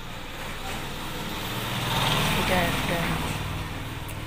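A road vehicle passing by, its engine noise swelling to a peak about two seconds in and then fading, with faint voices under it.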